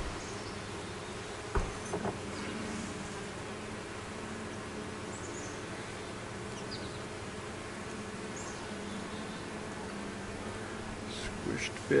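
Honeybee colony buzzing steadily from an open hive box full of bees. A couple of short knocks come about one and a half to two seconds in.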